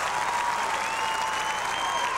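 Arena audience applauding steadily, with a thin high tone held through the clapping.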